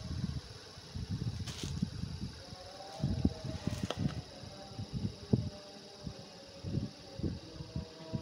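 Handling noise as embroidered lawn fabric and a paper catalogue card are moved about close to the camera: irregular soft bumps and knocks with light rustling.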